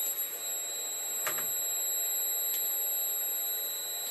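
A steady high-pitched electronic whine, with a sharp click about a second in.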